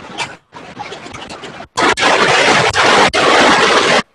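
Handling noise on a phone or tablet microphone as the device is moved: rubbing and scraping with a few clicks, patchy and cutting in and out at first, then a loud, steady rush from about halfway in until it cuts off at the end.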